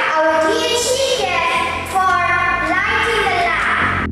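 Young girls singing into microphones, holding long notes that glide between pitches, with a low instrumental accompaniment coming in shortly after the start.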